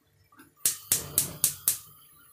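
Gas hob's spark igniter clicking five times in quick, even succession, about four clicks a second, as a burner knob is turned to light the burner.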